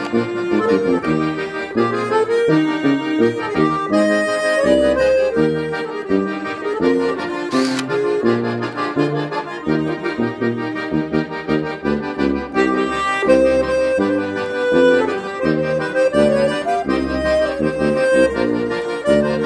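Two accordions playing a hymn in full chords over a tuba bass line, with the parts recorded separately and mixed together.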